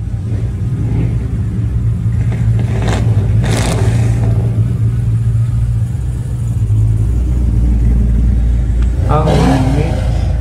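Classic car engine running with a steady, deep exhaust rumble, swelling to its heaviest about seven seconds in, with a short burst of noise about three and a half seconds in.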